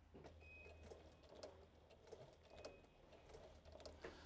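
Faint, irregular clicks of a Sailrite Ultrafeed walking-foot sewing machine stitching slowly through vinyl, over a low steady hum, with a faint thin whine twice.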